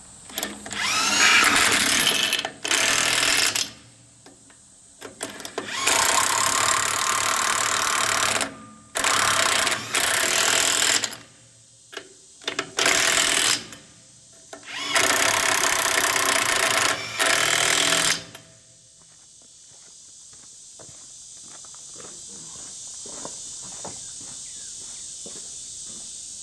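Impact wrench run in about six bursts of one to three seconds, spinning lug nuts down onto a trailer hub's wheel studs. After about 18 s the bursts stop and a faint steady hiss slowly grows louder.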